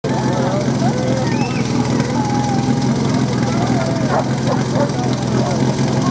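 A steady low engine drone, with people's voices talking and calling over it.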